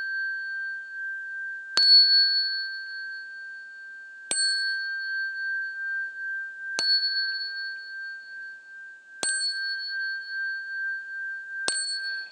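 Small Buddhist ritual bell struck five times, about every two and a half seconds. Each strike rings on in a steady high tone that carries into the next. The strikes pace the bows to the Buddha.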